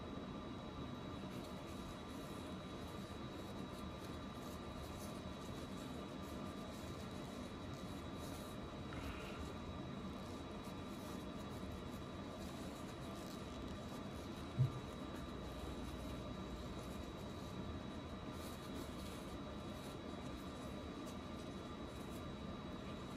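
Faint rustling and rubbing of a paper tissue being worked over a small gold ring between the fingers, over a steady background hiss. One short, low thump comes about two-thirds of the way through.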